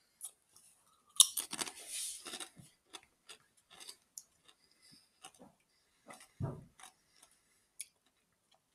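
A man biting into and chewing Doritos tortilla chips: a burst of crisp crunching about a second in, then scattered, quieter crunches as he chews.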